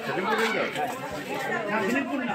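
Crowd chatter: several people talking at once, their voices overlapping.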